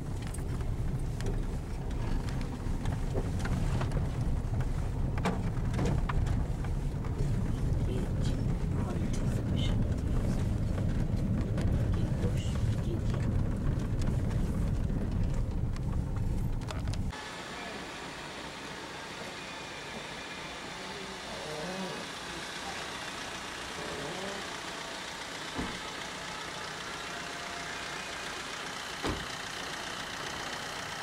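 Steady low rumble of road and engine noise heard from inside a moving car. It cuts off abruptly about seventeen seconds in, giving way to quieter street ambience with faint voices and a couple of small knocks.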